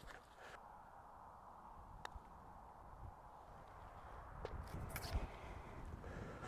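Quiet outdoor ambience: a faint steady hiss with a sharp tick about two seconds in and a few faint ticks and low thumps near the end.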